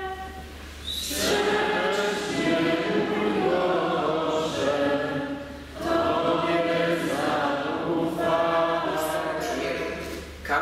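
A church congregation singing the responsorial psalm refrain together, unaccompanied, in two sung phrases with a short break about six seconds in.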